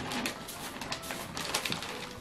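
Wrapping paper rustling and crinkling as it is folded and creased around a gift box by hand, in irregular little scrapes and crackles.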